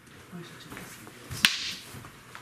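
A single sharp crack of a rattan fighting stick landing a strike in sparring, about one and a half seconds in, with a brief ring after it.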